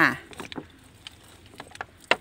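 Liquid poured in a thin stream from a plastic bottle, splashing faintly onto caladium leaves and potting soil, with a few separate drip taps.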